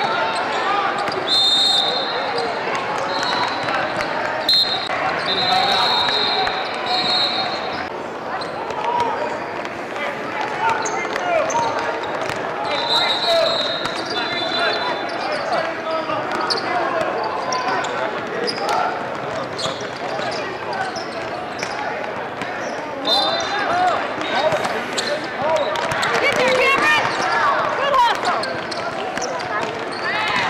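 Basketball game in a large hall: a ball bouncing on the court under a steady hum of many voices, with repeated short high-pitched squeals.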